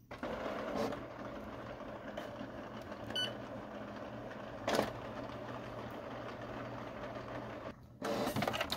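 Canon Pixma TR8520 inkjet printer's mechanism whirring steadily through its initial start-up cycle after the ink tanks are installed, with a click about a second in and a louder clack near five seconds.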